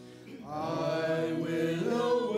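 Voices singing a slow chant: a short break between phrases, then the next sung phrase begins about half a second in with long held notes.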